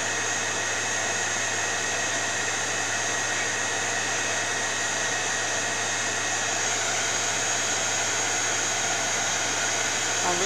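Handheld electric heat gun blowing hot air, running steadily: an even hiss with a faint steady whine.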